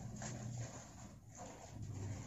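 Faint rustling and creasing of a sheet of craft paper as it is folded by hand, with a low steady hum underneath.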